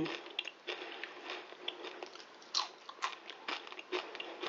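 Crisp crunching of homemade oven-baked potato chips being bitten and chewed, a run of irregular crackles. The crunch is the test of how crispy the chips have baked.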